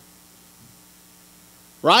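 Faint steady mains hum during a lull in speech, then a man's voice says "Right?" near the end.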